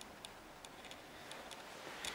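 Faint, light clicks, several of them at irregular intervals, over the quiet hiss of an empty room.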